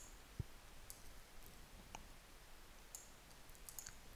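Near silence with a few faint computer mouse clicks, spaced about a second apart.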